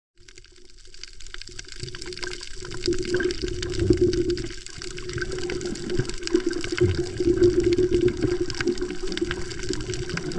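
Underwater sound through a camera submerged on a coral reef: a muffled, unsteady water wash with fine crackling clicks over a steady low hum, fading in over the first few seconds.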